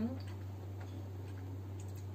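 A short murmured "hmm?" at the start, then faint, scattered soft clicks of someone chewing pizza, over a steady low electrical hum.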